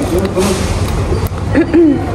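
Brief untranscribed voice sounds, a short fragment near the start and another about three-quarters of the way in, over a steady low rumble of background noise.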